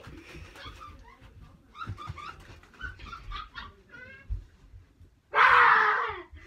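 A young child's high-pitched squeals and babbling in short bursts, then a loud shriek lasting about a second near the end.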